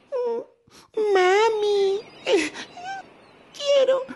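Cartoon baby crab voiced crying, a lost little crab wailing for its mother. A short cry comes first, then a long wavering wail about a second in, a short falling sob, and another wail starting near the end.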